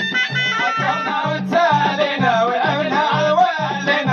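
Moroccan Jebli ghaita folk music: a reedy ghaita (shawm) melody over a steady beat of hand-struck frame drums, about two to three strokes a second, with men's voices singing.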